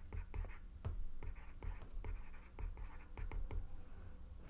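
Stylus tapping and scratching on a tablet's glass screen as a word is handwritten: an irregular run of light ticks and short strokes.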